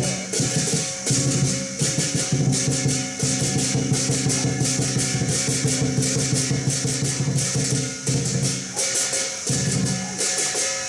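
Chinese lion-dance percussion of drum, gong and cymbals playing a fast, steady beat to accompany a kung fu form, the gong and cymbals ringing between strikes.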